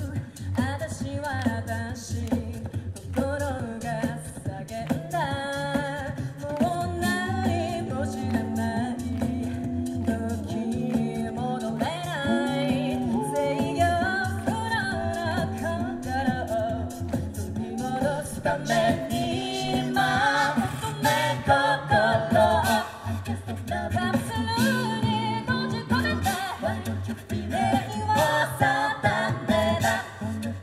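A cappella vocal group singing through a PA system: several voices in close harmony over a low sung bass line.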